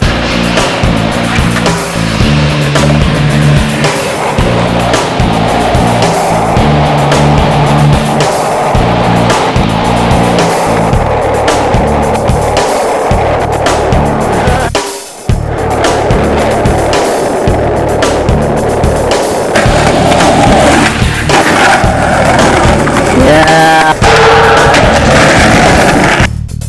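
Skateboard wheels rolling on concrete and pavement, mixed with a loud music track with a steady bass line. There is a brief drop-out about halfway through.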